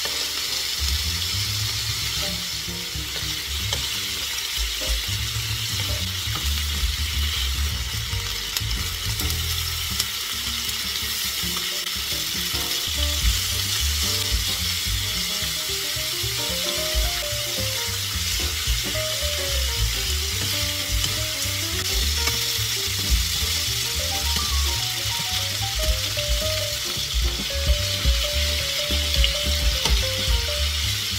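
Pork belly slices and garlic cloves sizzling steadily in hot fat in a nonstick frying pan. Metal tongs turning the meat now and then scrape and click against the pan, more often near the end.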